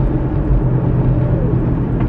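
Car cabin noise while driving: a steady low engine hum over road noise.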